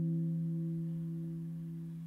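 The last note of a live-looped electro-pop song, a single low steady note slowly fading out.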